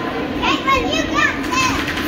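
A child's high voice speaking briefly, about half a second in, over the steady background hubbub of a crowded room.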